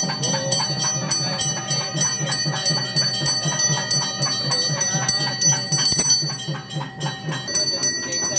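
Brass puja hand bell rung rapidly and steadily, about five strokes a second, with a low regular beat underneath.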